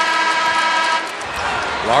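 Basketball arena horn sounding one steady blast for about a second, then arena crowd noise.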